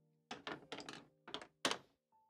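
A quick, irregular series of knocks and thunks from objects being handled and set down on a work desk, the last one the loudest.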